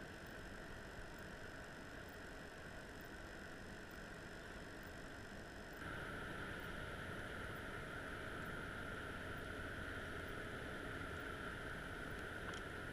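Steady, muffled underwater noise from a camera resting on the seabed inside a creel, with a faint hum. The hiss steps up and stays louder about six seconds in.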